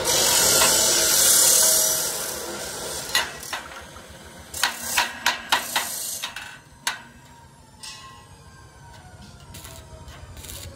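Stick (arc) welding crackling and hissing for about two and a half seconds as a square steel tube joint is tacked, followed by a run of sharp metal knocks from a chipping hammer striking the fresh weld to knock off the slag.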